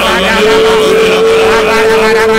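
Several men's voices singing together into studio microphones, with one voice holding a long, steady note from about half a second in.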